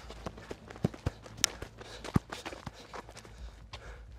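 Footsteps on gritty asphalt: irregular scuffs and crunches of shoes walking over debris, with low rumble from a handheld camera being carried.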